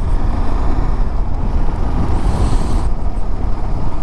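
A new motorcycle ridden slowly in town: a steady low engine and road rumble, its engine kept at low revs for the first-1000-km break-in. A brief hiss rises and fades about two seconds in.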